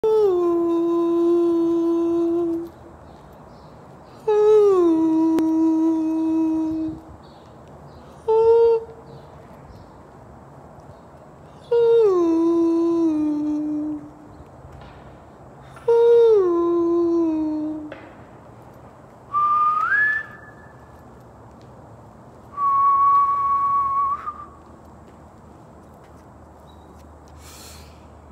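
A person's voice humming or crooning long held notes: five phrases, each sliding down a step and held for about two seconds, with pauses between. Near the end come two higher whistled notes, the first rising and the second steady.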